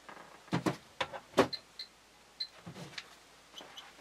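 A handheld Geiger counter being set down under a UVC lamp, with about four sharp plastic knocks in the first one and a half seconds. Three short high-pitched Geiger counter chirps follow.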